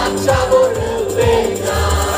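Live band playing a song: several voices singing together through the PA over a steady bass line and drum beats about twice a second.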